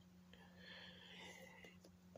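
Near silence: room tone, with a faint breathy hiss lasting about a second and a half.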